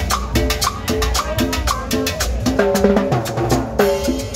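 A live street band playing upbeat Latin dance music: quick, steady drum and percussion strikes under a repeating riff, with saxophone in the band and a melodic horn line coming forward in the second half.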